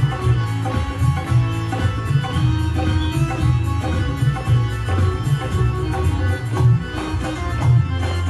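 Music from the TV show's band: plucked strings and keyboard over a pulsing bass line, at a steady, full level.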